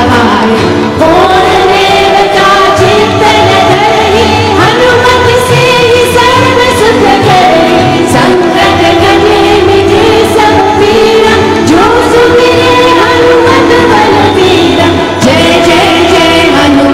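Group of voices singing a Hindu devotional bhajan to Hanuman in long, gliding melodic lines, accompanied by harmonium and tabla, continuous throughout.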